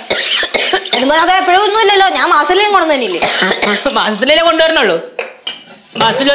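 Speech: a woman talking in Malayalam with long rising and falling sweeps of pitch, then a short pause with a single click about five seconds in.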